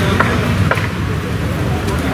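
Steady outdoor background rumble with indistinct voices and a couple of faint clicks.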